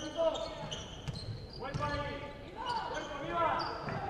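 Basketball shoes squeaking on a hardwood court in short, high-pitched chirps during live play, with a basketball bouncing.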